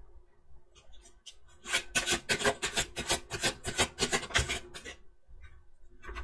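A deck of tarot cards being shuffled and handled by hand: a quick run of short card-on-card rubs and flicks, several a second, starting about two seconds in and lasting about three seconds.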